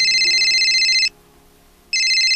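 Mobile phone ringtone: a fast-warbling electronic ring that stops about a second in, then rings again near the end.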